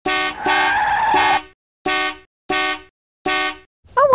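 Car horn honking: one long blast, then three short toots in quick succession.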